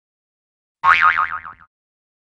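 A short cartoon 'boing' sound effect, a wobbling, wavering pitch that fades out within about a second, set in dead silence and starting a little under a second in.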